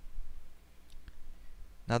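Two faint computer mouse clicks in quick succession about a second in, over a steady low hum, before a man's voice begins at the very end.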